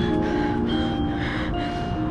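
Marching band brass playing a passage of held notes that change every half second or so, with a trombone right beside the head-mounted microphone.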